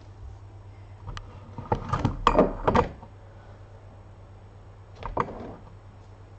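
Knocks, scrapes and rustles of a cat toy and a cardboard box being knocked about in play on a wooden floor: a flurry of sharp knocks about one to three seconds in, and a shorter burst about five seconds in.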